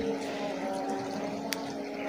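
A steady low mechanical hum, with one short faint click about one and a half seconds in.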